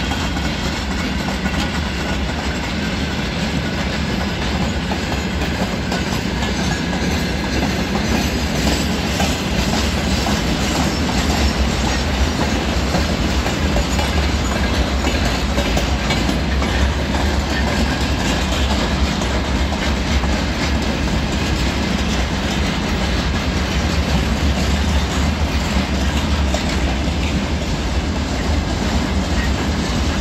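Covered hopper and tank wagons of a long freight train rolling past close by: a steady, unbroken rumble of steel wheels running on the rails.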